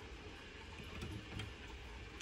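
Quiet room tone with a couple of faint clicks as a kitchen cabinet door swings open.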